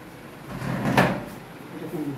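A single sharp knock about a second in, against low voice-like murmur.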